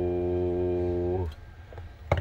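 A man's voice holding one long, steady drawn-out "hello" into a CB microphone to drive the transmitter's modulation for a wattmeter reading; it stops about a second in, leaving a low hum.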